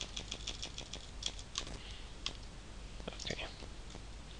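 Computer keyboard typing: quick key clicks, a rapid run of presses in the first second, scattered single presses, then a short flurry a little after three seconds.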